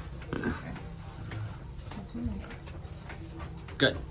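A few short spoken words, the loudest just before the end, over a steady low hum.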